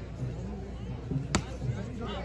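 A single sharp slap of a hand striking a volleyball on the serve, a little past halfway through, over faint crowd murmur.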